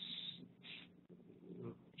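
A pause in a man's narration: a short breath near the start and a faint murmur of voice just before he speaks again, over a steady low hum.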